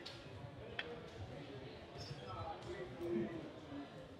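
Faint room background of indistinct voices talking, with a single light click about a second in.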